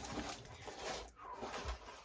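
Cardboard shipping box being opened by hand: faint rustling and scraping of the flaps, with a soft bump near the end.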